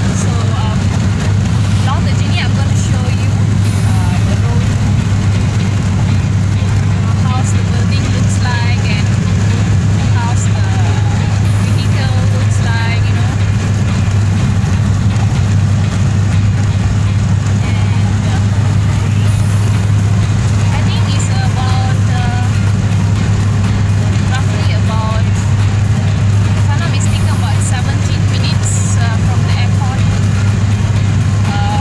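Steady, loud low rumble inside a moving car's cabin: road and engine noise with wind buffeting through an open window. Faint voices run underneath.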